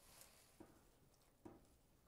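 Near silence, with a few faint soft touches as a wooden spoon stirs fresh baby spinach leaves into a stainless steel pot of lentil soup.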